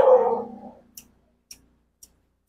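A dog barks briefly at the start, then pruning scissors snip twice, faintly, about half a second apart as young bougainvillea shoots are cut.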